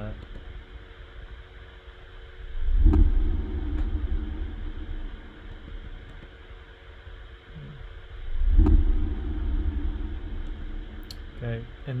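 Sound-design playback of a five-gallon water-jug hit, doubled, pitched down and given sub bass, layered with its own reverse: two deep booming swells about six seconds apart, each rising and dying away over about a second, over a steady low hum.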